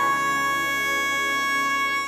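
A sung vocal holding one long, steady final note over a synth pad, the voice wet with reverb from the Spacelab plugin on a send.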